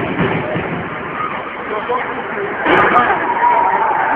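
Ice hockey game in an arena: steady crowd and rink noise with voices, and a sharp knock about three seconds in, followed by a held shout.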